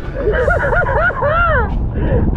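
A man laughing: a quick run of short, high 'ha-ha' notes from about half a second in, over a steady low rumble of wind on the microphone.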